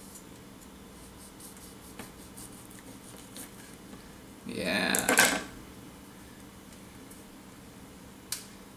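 A small knife cuts a sapodilla on a wooden table against quiet room tone, giving a few faint clicks. About halfway through there is a brief, louder voice-like sound lasting under a second.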